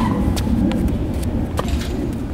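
A tennis ball struck hard by a racket on a forehand right at the start, followed by a few fainter knocks of the ball bouncing or shoes on the hard court, over steady low background noise.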